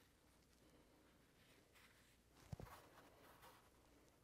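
Near silence, with faint rustling as fabric quilt blocks are moved by hand on a felt design wall, and one soft thump about two and a half seconds in.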